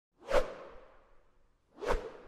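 Two whoosh sound effects from an animated logo intro: one shortly after the start that fades away over most of a second, and a second that builds up quickly near the end.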